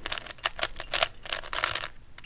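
Plastic 3x3 Rubik's cube being turned by hand in quick succession: a rapid run of clicks and clacks as its layers snap round through the edge-swapping algorithm.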